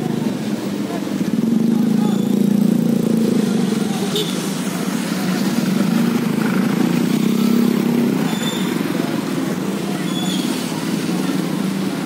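Motorcycle engines idling close by, a steady low running hum that rises and falls a little, with onlookers' voices mixed in.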